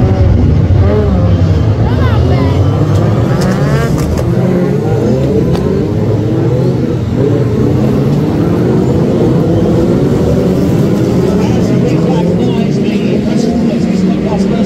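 A pack of BriSCA F2 stock cars racing together, many engines running loudly at once. Their pitch rises as they accelerate in the first few seconds, then settles into a steady mass of engine noise.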